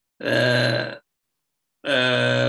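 A man's single drawn-out hesitation sound, an 'uhh' held at one steady pitch for just under a second, between stretches of speech.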